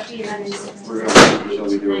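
A single loud bang of something hard being shut or knocked, about a second in, with quiet talk in the room.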